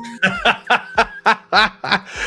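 A man laughing in a run of short, evenly spaced bursts, about three a second.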